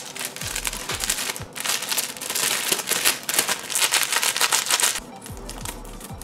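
Crinkling and rustling of a thin plastic packet of rice flour being handled and pulled at to open it, over background music. The crinkling goes on for about five seconds, then quietens near the end.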